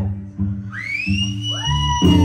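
Music: strummed acoustic guitar under a high, pure melody line that slides upward into long held notes.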